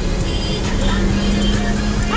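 Car cabin noise while driving slowly: a steady low engine and road rumble with a constant hum running through it.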